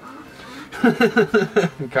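A man chuckling: a short run of quick laughs in the second half.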